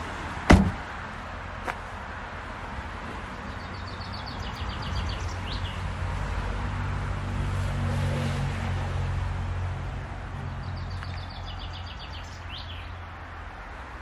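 The Fiat 500's hatchback tailgate slammed shut with one loud thud about half a second in. After it comes outdoor ambience: a low vehicle engine rumble that swells through the middle and fades, and a short high chirping heard twice.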